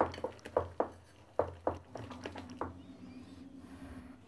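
A hand beating thick besan (gram flour) batter in a glass bowl: about eight irregular wet slaps and squelches, stopping a little under three seconds in. The rested batter is being whipped again to aerate it. A faint steady hum runs through the second half.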